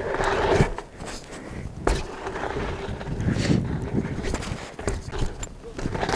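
A dirt-jump mountain bike rolling and being pushed up a dirt slope, with irregular knocks, scuffs and thuds from the tyres, frame and footsteps on the dirt.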